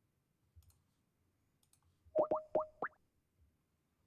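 Computer mouse clicks, then about two seconds in four quick rising electronic tones over a steady note: the Skype app's sound as a call is placed.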